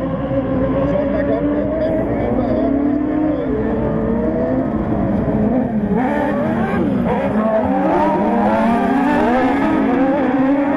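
Several 1600 cc autocross buggies racing on a dirt track, their engines revving up and down through the corners with several engine notes overlapping. About seven seconds in, one engine note dips briefly and then climbs again.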